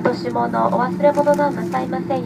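Passengers talking in the cabin of an Airbus A330-300 taxiing after landing, over the cabin's steady low hum.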